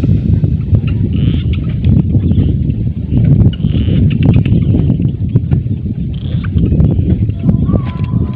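Wind buffeting the microphone: a loud, uneven low rumble with scattered knocks and clicks.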